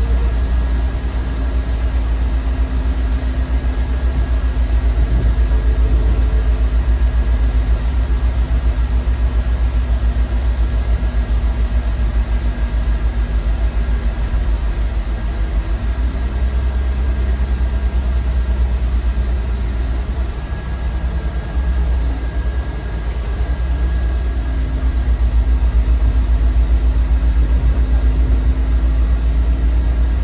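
Autosan Sancity M12LF city bus under way, heard from the driver's cab: a steady low engine rumble with a faint even hum above it, easing off briefly a little past the middle before picking up again.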